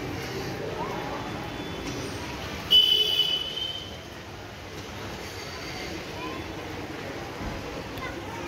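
Steady background noise of rain and a street. About three seconds in comes a short, loud, high-pitched vehicle horn blast that fades within about a second, with faint distant voices around it.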